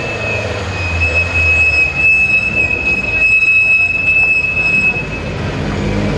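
Historic Ford Escort Mk2 rally car's engine running low as the car rolls down off the podium ramp, under a steady high-pitched whine that holds for about five seconds and then stops.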